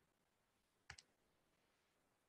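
Near silence, broken about a second in by a faint double click, two short clicks close together, as of a computer key being pressed.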